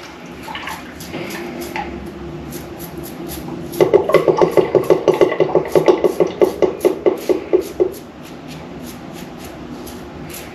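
Stainless steel Rex Ambassador adjustable safety razor scraping through lathered stubble on the chin. A quick run of short, evenly repeated strokes, about seven or eight a second, starts about four seconds in and lasts about four seconds.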